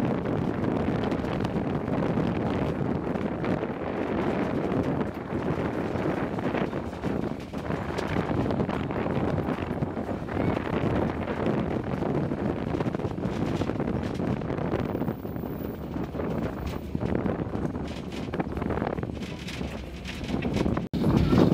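Narrow-gauge island train running along its 1000 mm track, a steady rolling rumble mixed with wind buffeting the microphone.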